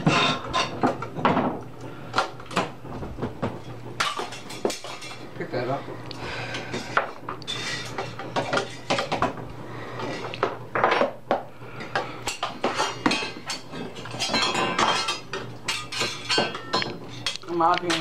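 Metal hand tools and a metal part clinking and clanking on a workbench while the part is taken apart with a screwdriver: many sharp, irregular clicks and knocks throughout.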